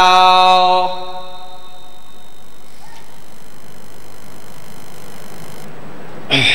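A man's chanted Arabic recitation through a microphone ends on one long held note, which stops about a second in; after it comes a steady hiss.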